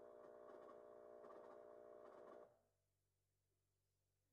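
Near silence: a faint steady hum of several held tones that cuts off suddenly about two and a half seconds in, leaving only a still quieter background.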